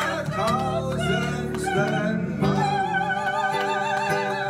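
A woman singing over acoustic guitar; in the second half she holds one long note with a wide vibrato.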